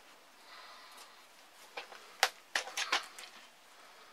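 Chicken wire being handled and bent, giving a quick run of about half a dozen sharp clicks and ticks around the middle, one of them much louder than the rest.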